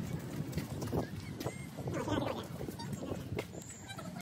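Footsteps on a concrete walkway at a walking pace, about two steps a second, over an outdoor ambience with a low rumble and faint distant calls.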